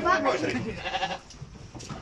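Sheep bleating: a short call in the first second, then quieter.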